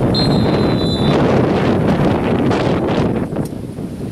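Wind buffeting the microphone in a steady rumble, with a single high referee's whistle blast lasting about a second at the start.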